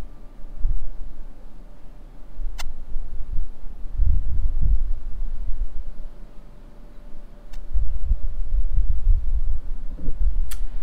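Wind buffeting a small camera's microphone: a low rumble that swells and fades in gusts, with a couple of faint clicks.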